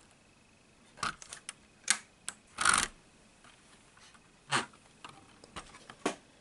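Handling noise: a few light clicks and short rustles, the longest just before the halfway point, with quiet gaps between.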